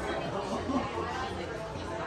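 Indistinct background chatter: several people talking at once in a restaurant dining room, with no single clear voice.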